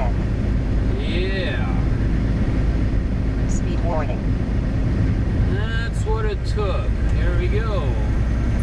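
Steady low drone of a tractor-trailer's engine and road noise heard inside the cab while cruising on the highway. Short stretches of talk sit over it about a second in and again near the end.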